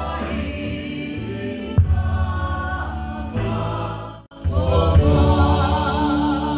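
A church worship band plays a hymn with drum kit, bass and keyboard while singers sing. The sound drops out for a split second just past four seconds in, then the music comes back on a new chord.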